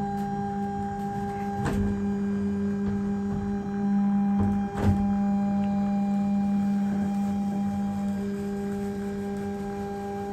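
Steady electric motor hum from the NexDome observatory's shutter motor as it drives the dome shutter open, with a few light clicks about two and five seconds in.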